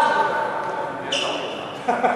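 Men's voices echoing in a large indoor badminton hall, with a short high squeak of a court shoe on the floor about a second in and a sharp knock near the end.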